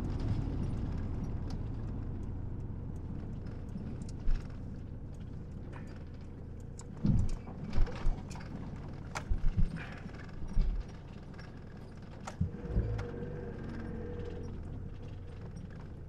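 Inside a campervan, the engine and road noise die down as the van slows. From about seven seconds in, its tyres roll slowly over gravel, with irregular crunches and sharp stone pops and a few dull bumps through the suspension.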